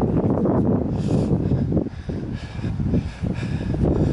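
Wind buffeting the camera microphone, an uneven low rumble that rises and falls in gusts.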